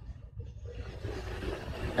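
Low, steady background rumble with no distinct event.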